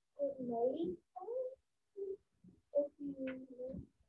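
A quieter voice speaking in short, broken phrases over a video call's audio, much softer than the main speaker.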